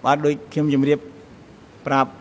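A man speaking in short phrases, with a pause of about a second between them.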